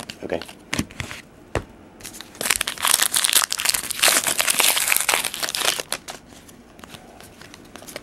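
Plastic wrapper of a Panini Prestige basketball card pack crinkling and tearing as it is opened, for about four seconds in the middle, after a few light clicks of cards being handled.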